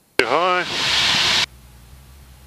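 A radio transmission over the aircraft's intercom: a click as the audio opens, a brief clipped voice, then about a second of loud hiss, dropping to a quieter low hum.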